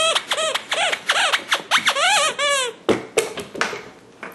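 A squeaky dog toy squeezed over and over, about eight short squeaks that rise and fall in pitch, followed by a couple of sharp knocks near the end.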